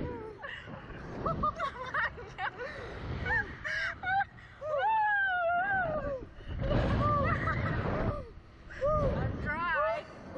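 Two riders on a slingshot ride laughing and crying out, with one long drawn-out cry about five seconds in and quick wavering laughter near the end. Bursts of wind rush over the microphone as the seat swings.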